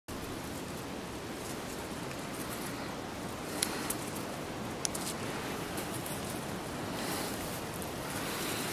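Steady rushing outdoor noise, with a few light snaps and rustles of footsteps moving through forest undergrowth a few seconds in.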